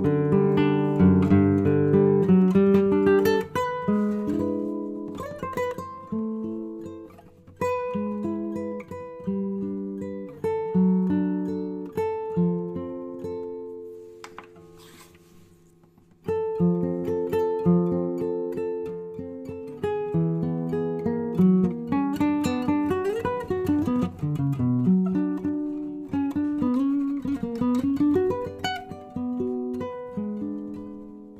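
Nylon-string classical guitar picked with a flatpick, playing melodic single-note lines. The first phrase is played with a plastic pick and rings out to near silence about 14 seconds in. A couple of seconds later the guitar starts again, played with a curly birch wooden pick, with a few notes bent in pitch.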